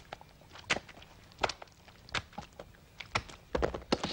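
Sparse short, soft taps and slaps, about one every three-quarters of a second, with a quick cluster of them near the end: sound effects for the clay brain moving across the wooden floorboards.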